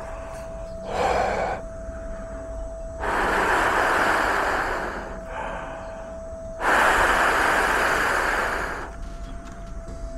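A person blowing warm breath close up onto a DJI Neo's upgraded motors: a short puff about a second in, then two long exhalations of about two seconds each. The breath warms the motors to clear an ESC error, because the mod's resistance changes with heat. A faint steady high tone runs underneath.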